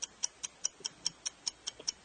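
Game countdown timer ticking evenly and quickly, about five sharp ticks a second, while the answer time runs.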